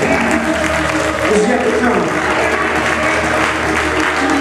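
A whooping sermon close in a Black church: the preacher's chanted, sung-style delivery over backing music, with the congregation clapping and calling out.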